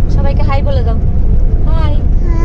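Steady low road rumble inside a moving car, with short stretches of talking over it near the start and near the end.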